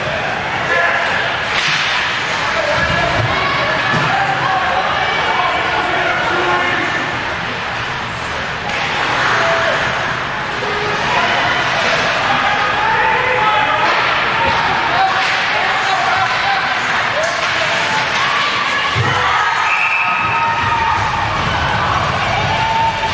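Ice hockey game in an indoor rink: spectators talk over each other, and the puck, sticks and players thud and slam against the boards now and then.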